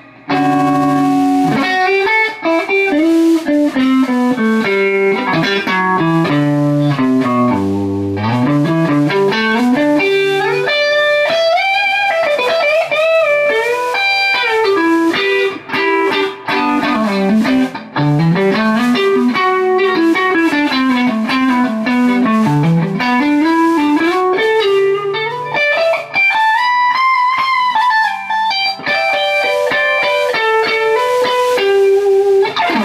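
Electric guitar played clean through an amp: a pine-body Telecaster-style custom guitar with Fender American Standard '52 pickups, playing single-note lead lines full of string bends and slides. There is a brief break just at the start.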